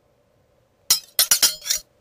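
A quick run of four or five sharp clinks, each with a short bright ring, all within about a second.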